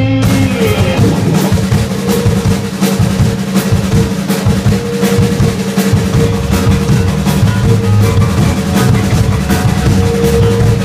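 Live rock band playing loud: a drum kit keeps a steady beat of regular hits under long, held electric guitar and bass notes.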